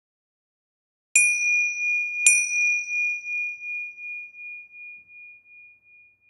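A small meditation chime or bell is struck twice, a little over a second apart. Each strike rings out in one clear high tone that wavers as it fades slowly, marking the change to the next pose.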